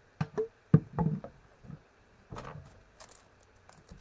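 Handling noise: a series of sharp knocks and clicks as objects are moved about and a plastic bottle is reached for and picked up. The loudest knock comes just under a second in.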